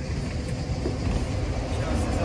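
City bus approaching and drawing up close. Its engine rumble grows louder, with a steady hum coming in about half a second in.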